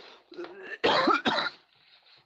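A person coughing and clearing their throat: a few rough bursts, the loudest about a second in.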